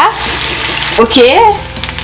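Oil and tomato paste sizzling in a nonstick frying pan, a steady hiss that drops away about a second in.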